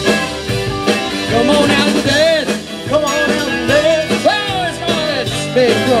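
Live rock band playing an instrumental passage: a lead line that bends up and down in pitch, over drums, bass guitar and keyboard.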